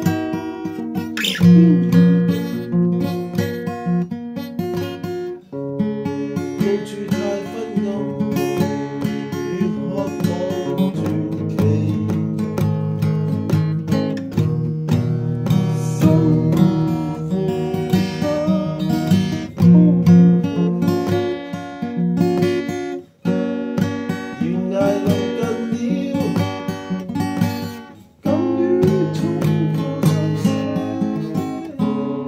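Acoustic guitar music, strummed and plucked, with a few short breaks.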